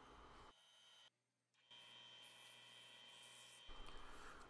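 Near silence: faint hiss with a faint steady high tone, cutting to dead silence for about half a second a little after the start.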